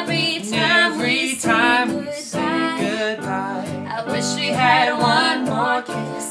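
Music: a sung vocal line over strummed acoustic guitar.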